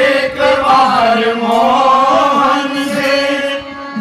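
Voices singing a Hindi devotional bhajan to Krishna into microphones, in long held notes that glide up and down, dipping briefly near the end.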